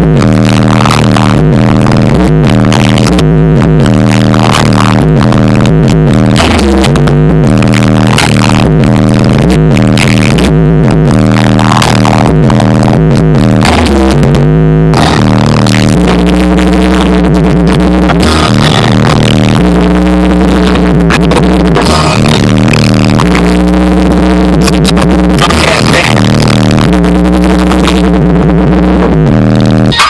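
Bass-heavy music played very loud through a car stereo with two 12-inch Sony Xplod subwoofers on a 500 W monoblock amp, heard inside the car's cabin, deep bass notes pounding steadily under the track.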